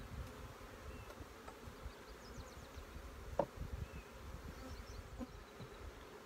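Honeybees buzzing around an open hive, with a single sharp knock about halfway through as the hive tool works the frames.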